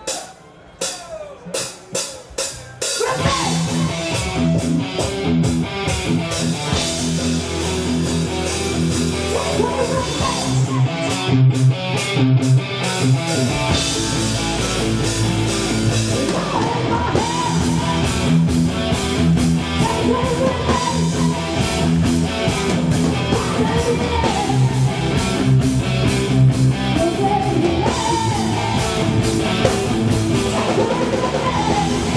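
Heavy metal band playing an old-school metal song live: about three seconds of evenly spaced sharp hits, then distorted electric guitars, bass and drum kit come in together at full volume, with sung vocal lines over them.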